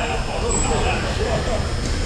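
Indistinct voices of players echoing in a gymnasium over a steady low rumble, with a brief high chirp about half a second in.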